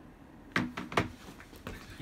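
Handling noise: a few soft clicks and knocks as a smartphone is turned over and gripped in the hand, over faint room tone.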